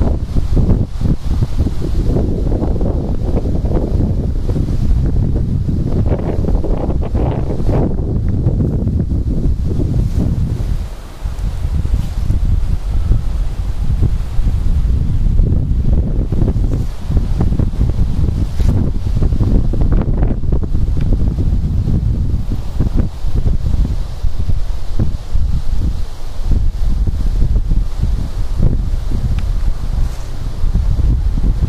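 Wind buffeting the camera's microphone: a loud, fluctuating low rumble in gusts, dropping away briefly about a third of the way through.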